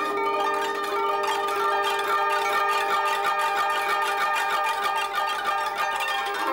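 Japanese koto with nylon strings, plucked with ivory finger picks. A quick, dense run of plucked notes rings on and overlaps as a piece is played.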